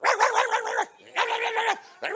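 A man's voice imitating a chihuahua, giving two high-pitched, drawn-out yaps, each just under a second long.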